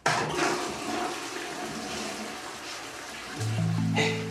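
Toilet flushing: a rush of water that starts suddenly and runs on steadily. Background music with low held bass notes comes in near the end.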